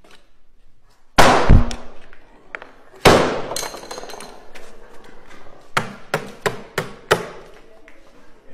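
Hard blows from a hand striking tool: two loud cracks about two seconds apart, the first leaving a brief low ring, then five quick sharp strikes in a row near the end.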